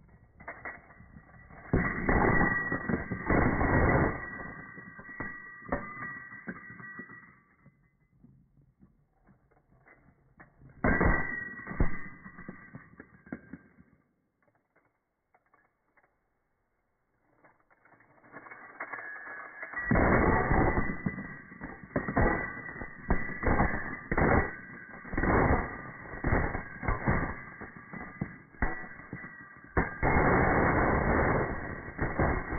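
Handfuls of US coins (pennies, nickels, dimes and quarters) dropped onto a growing pile, clattering and jingling as they land. There is a burst about two seconds in, a short one around eleven seconds, a quiet gap, then a long run of clattering from about twenty seconds on.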